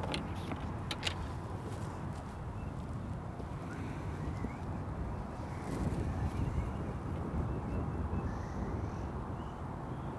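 Wind rumbling on the microphone, with a gust swelling about six seconds in. Two sharp clicks come in the first second, the second louder, and faint bird chirps are heard twice later on.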